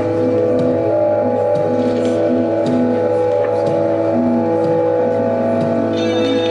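Experimental drone music: several steady held tones layered through a loop or effects pedal, with short repeated notes coming and going over the drone.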